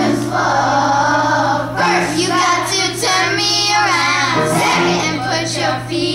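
Children's choir singing a song together, the voices continuous and carrying throughout.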